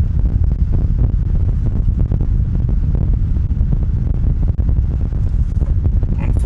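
A steady low rumble, with faint rustling and light ticks as paracord is pulled and threaded around a wooden drum frame.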